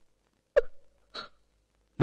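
A woman sobbing, two short catches of breath about half a second apart.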